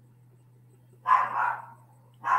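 A dog barks once, about a second in, over a steady low electrical hum.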